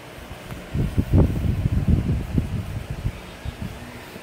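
Irregular low rumbling and bumping of handling noise on the phone's microphone, loudest from about one to three seconds in.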